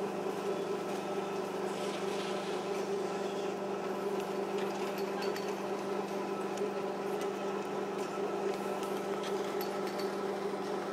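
A steady hum at a constant pitch that does not change, like a motor or machinery running, with a few faint ticks over it.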